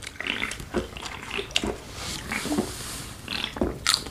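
Someone gulping milk from a can: irregular swallowing and breathing sounds with small wet clicks, and a short, louder burst of noise near the end.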